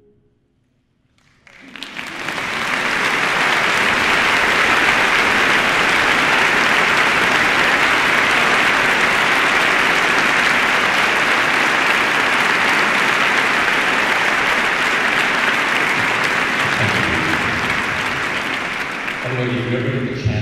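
Large audience applauding. It starts about a second and a half in, after a brief silence, and then holds steady.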